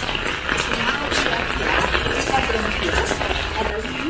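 Footsteps crunching on a wet gravel path, an irregular run of short crunches over a low steady rumble.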